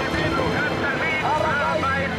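A man's voice coming over a military radio in an old archival recording, thin and narrow-sounding, over a steady background of noise and low hum.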